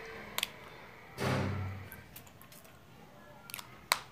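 Quiet handling sounds of marking fabric with a marker against a tape measure: a few light clicks and taps, and a brief rustle a little over a second in.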